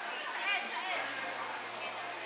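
Indistinct chatter of many people's voices in a busy public space, no words standing out.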